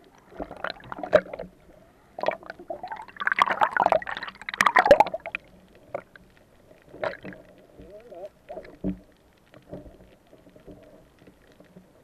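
Muffled gurgling and bubbling of water around a submerged camera, in irregular bursts that are busiest in the first half and thin out later.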